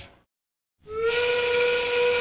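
The Steamworks robotics field's endgame signal: a steam-whistle blast that marks the last 30 seconds of the match. It comes in about a second in, after a moment of dead silence, as one steady pitched tone.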